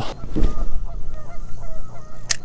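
Geese honking, a run of short, faint calls repeating several times a second, over a low steady rumble of wind.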